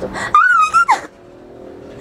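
A person's high-pitched squeal of delight lasting about a second, ending in a quick downward glide, then quiet.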